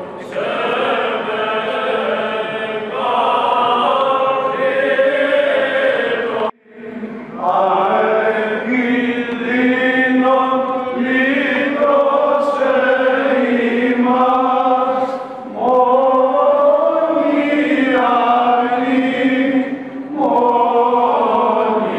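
Greek Orthodox Byzantine chant sung by a group of voices in long held phrases, with a brief break about six and a half seconds in.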